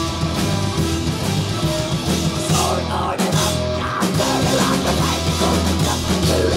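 A folk metal band playing live: distorted guitars and bass over a drum kit, loud and steady, with held melody notes above the beat.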